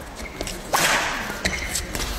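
Badminton rally: racket strikes on the shuttlecock, the sharpest a whip-like crack about three-quarters of a second in that rings briefly in the hall, with lighter hits or clicks around it.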